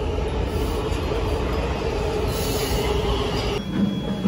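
Washington Metro subway train pulling into an underground station: a steady low rumble with a steady tone held above it. It cuts off shortly before the end.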